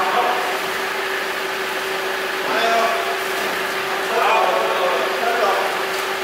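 Men's voices talking in short bursts, twice, over a steady low hum and room noise.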